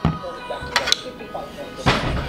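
A metal fork clinks against a plate a few times as it cuts into a stack of pancakes, the loudest clink near the end, over background music.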